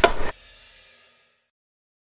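Loud, noisy ride sound with sharp clicks that cuts off abruptly about a third of a second in. A faint trace fades out within the next second, followed by dead silence: the audio track drops out while the riding goes on.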